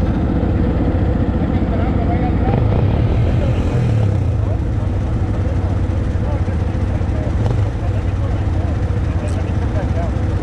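ATV engines idling steadily, with wind buffeting the microphone and faint voices in the background.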